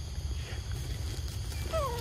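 A young macaque gives one short call that falls in pitch, near the end, over a steady low rumble.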